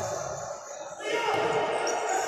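Futsal play in an echoing indoor sports hall: the ball striking the wooden court amid the game's noise.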